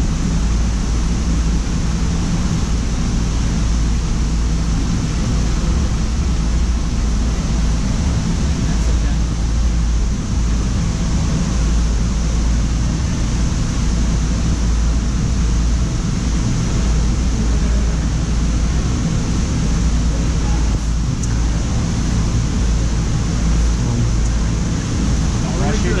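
Steady, loud background noise of a large indoor gym: a constant low rumble and hum under an even hiss, with indistinct voices.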